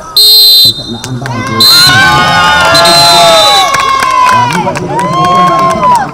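Referee's whistle blown in three blasts, a short sharp one at the start, a brief one about a second and a half in and a longer one around three seconds, over several people shouting and cheering.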